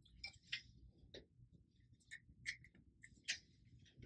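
Near silence with a few faint, irregular clicks and light rustles: a plastic plug and power cable being handled and connected to a lightstrip's power supply box.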